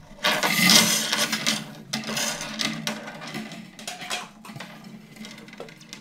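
A metal slinky rattling and scraping as it is handled and stretched out, in a run of jangly rustles that is loudest about a quarter second in and fades toward the end, over a steady low hum.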